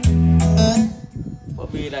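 Music with a strong bass played through a Yamaha A-501 stereo amplifier and loudspeakers, cutting off abruptly less than a second in; a man's voice follows near the end.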